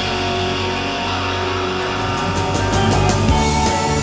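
A 1990s Britpop recording in an instrumental stretch: electric guitars holding a ringing chord, with sharp hits coming in after about two seconds.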